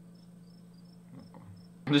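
Quiet room tone: a low steady hum with faint, evenly spaced high chirps, a few a second, like an insect's; a voice starts right at the end.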